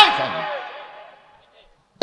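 A man's amplified voice over a public-address system breaking off, its echo dying away over about a second, then quiet until he speaks again.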